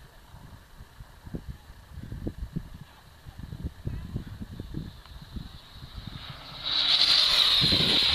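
Electric RC speed car on a 6S LiPo pack arriving at high speed about seven seconds in: a sudden loud, high-pitched motor whine with tyre hiss that holds as it goes by. Before it, wind buffets the microphone.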